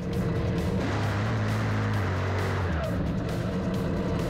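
Top Fuel dragster engines, supercharged nitromethane V8s, running loud and steady with background music playing over them.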